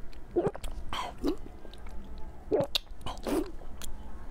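Close-miked biting and chewing of a soft chunk of pork: a string of about six short bites and mouth smacks.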